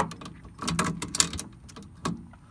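Kobalt ratcheting adjustable wrench ratcheting on a strut nut, with a short run of metallic clacks near the middle.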